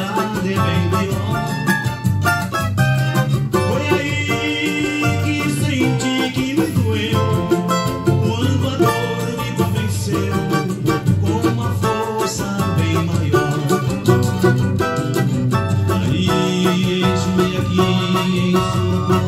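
A cavaquinho picks a quick melody of short notes over a backing track with bass and a steady beat, in an instrumental stretch of the song.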